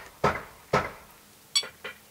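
Short high electronic beep from the ToolkitRC M6 charger as one of its touch buttons is pressed, about one and a half seconds in. It comes after two soft knocks.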